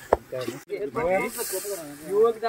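A metal ladle clacks once against a large metal cooking pot of chicken gravy, and about a second later there is a brief hiss. Voices talk through it.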